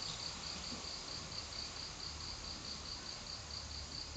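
A cricket chirping faintly, an even, steady pulse of several chirps a second, over a low hum.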